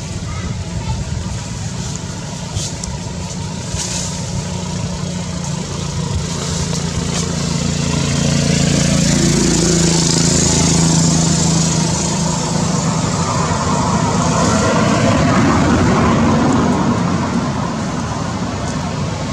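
A motor engine running steadily, getting louder about eight seconds in and easing off near the end.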